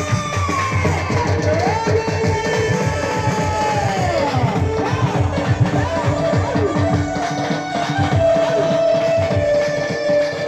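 Loud dance music with a dense beat from an electronic drum pad struck with sticks, under a melody line that slides up and down in pitch and settles into longer held notes near the end.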